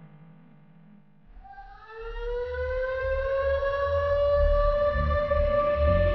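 Air-raid-style siren sound in an electronic music track. About a second in it swells upward in pitch and settles into a long, steady wail, getting louder over a deep pulsing bass.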